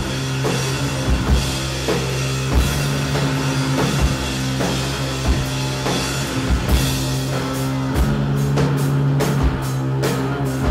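Live metal played on distorted electric guitar and drum kit: the guitar holds long, low sustained notes over slow, heavy drum hits. In the last few seconds the cymbal strikes come quick and regular.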